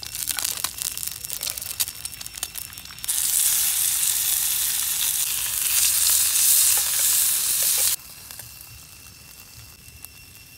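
Food frying in a small oiled pan over a campfire: crackling and light utensil clicks at first, then from about three seconds in a loud, steady sizzle as pieces of meat fry, which cuts off suddenly near eight seconds.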